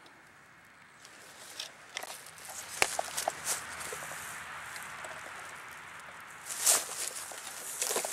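Footsteps and rustling in dry pine straw, with scattered light clicks and one sharper knock about three seconds in, and a louder rustle near the end.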